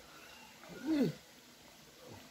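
A single short playful vocal call, an 'oh'-like sound that rises and then falls in pitch, about a second in, from someone playing with a baby.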